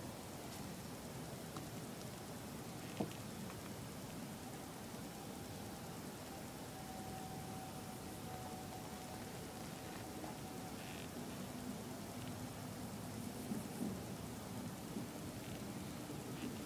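Steady low background hiss with a faint hum in the second half and a single click about three seconds in.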